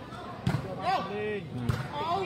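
A ball struck twice by a foot, two dull thuds about half a second in and near the end, with men's voices calling out between them.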